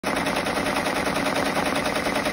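Brother six-needle embroidery machine stitching a name onto a hooped lab coat: a rapid, even run of needle strokes that goes on steadily.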